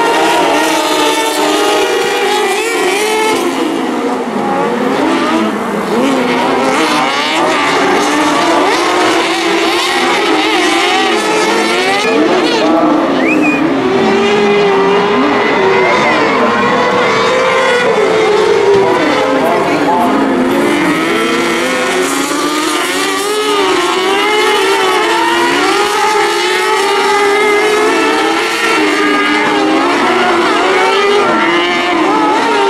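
Several kartcross buggies racing together, their high-revving 600 cc motorcycle engines rising and falling in pitch over one another as they accelerate and brake through the corners.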